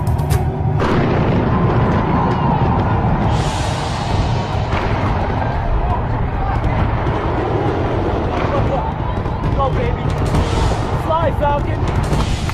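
Fireworks display going off: a dense, continuous barrage with booms that starts about a second in, mixed with music.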